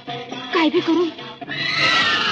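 A short wavering cry about half a second in, then film score music comes in loudly about one and a half seconds in, with falling notes.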